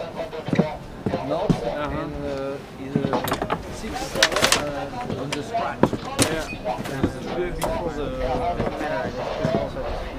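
Several people talking indistinctly, with a few sharp knocks and clatters among the voices.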